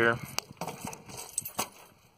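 A few light, scattered clicks and knocks over a quiet background.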